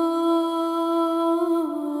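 A woman's voice humming one long held note in the song's opening, wordless, stepping down to a slightly lower pitch near the end.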